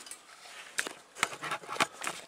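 A few light clicks and knocks, about four of them in the second half, against a quiet background.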